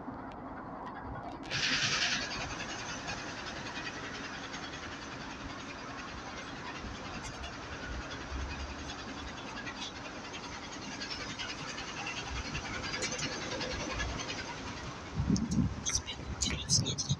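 NefAZ 5299 city bus running, a steady engine hum under a wash of road and running noise that slowly builds, with a short loud hiss about a second and a half in.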